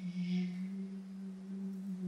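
A single low tone held at one steady pitch, a plain drone with a faint higher overtone.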